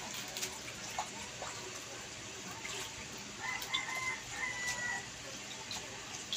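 A drawn-out animal call, held for about a second and a half about halfway through, over scattered light taps and clicks.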